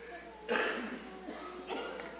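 A person coughing once, sharply, about half a second in, followed by faint talking.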